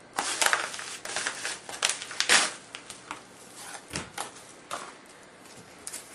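A mail package being worked open by hand: irregular crinkling and crackling of packaging, with a few louder rips and crunches, the loudest a little past two seconds in.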